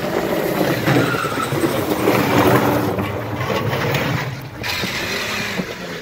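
Acura CL's engine revving hard under heavy throttle as the car is driven hard around the lot, with a brief drop in level about four and a half seconds in.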